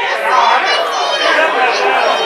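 Several people's voices shouting and chattering at once, with high-pitched shouts about half a second in and again near the end.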